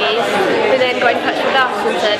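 Speech only: a teenage girl talking, with other people chattering in the room behind her.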